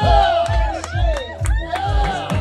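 Live band music: a slide-played guitar laid across the player's lap, its notes gliding up and down in pitch, over a steady kick drum about two beats a second.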